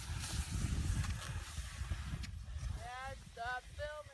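Low rumbling noise, then about three seconds in three short, high-pitched, wavering vocal cries.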